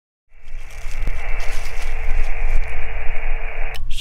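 Amateur radio transceiver's speaker hissing with static, the hiss narrowed to a band like a voice channel, starting suddenly just after the start over a low rumble. Near the end a man's voice comes in.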